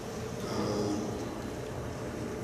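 Room tone of a large hall heard through a lectern microphone during a pause in a man's talk, with a brief faint hiss about half a second in.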